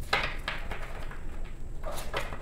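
A deck of gilt-edged tarot cards handled in the hands, with a few short rustling brushes near the start as the deck is squared and split for shuffling.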